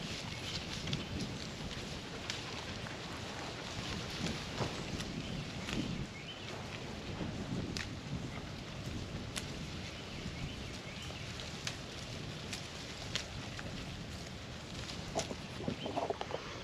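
Kiko goats browsing brush: leaves rustling as they are pulled and stripped, with irregular sharp snaps and clicks of twigs throughout.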